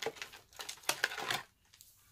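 Plastic packaging of a nail polish set being ripped open, crinkling for about a second and a half.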